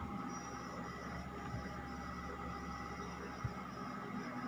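Steady low machine hum in a small room, with soft handling sounds of clothes being folded and one short light knock about three and a half seconds in.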